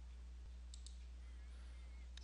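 Faint low steady hum with two quick, faint clicks close together a little under a second in, the press-and-release of a computer mouse button.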